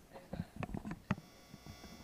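Microphone being handled: a few soft bumps, then a steady electrical buzz from the sound system for the last part.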